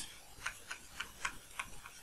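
A pen stylus tip tapping and clicking on a tablet's hard surface while handwriting, making a quick series of faint, light ticks, about five a second and unevenly spaced.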